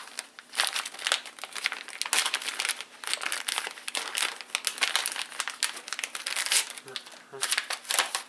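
Clear plastic Ziploc bag crinkling in dense, irregular bursts as it is opened and the folded paper item inside is pulled out.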